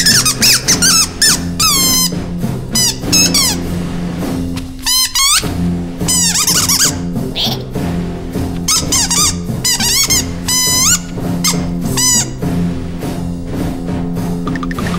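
A chorus of high-pitched squeaky cartoon-ant voices: flurries of short squeals that glide up and down, pausing briefly about five seconds in. Underneath runs background music with long held low notes.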